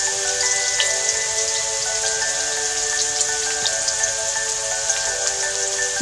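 Ginger strips and bay leaves frying in hot oil in a wok: a steady sizzle with many small crackles. Soft background music of long held notes plays under it.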